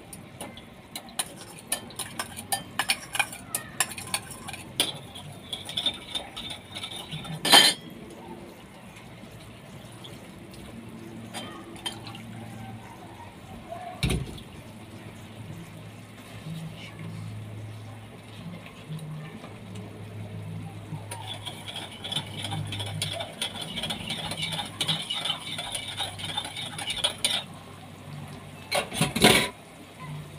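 Metal tongs clinking and scraping against a pot as pork chops are turned in hot oil, with the meat sizzling. A few sharper knocks stand out, about a third of the way in, midway and near the end.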